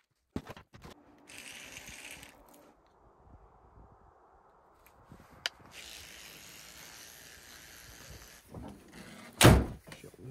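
Teeth being brushed with a toothbrush: a steady scrubbing hiss lasting a few seconds. A short rustle comes about a second in, and a heavy thunk near the end is the loudest sound.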